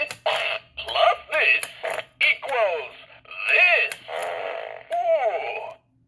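Gemmy Animated Fart Guy novelty figure playing one of its recorded phrases through its small speaker, after its button is pressed: a comic man's voice whose pitch swoops up and down, mixed with fart sounds. The phrase stops about a second before the end.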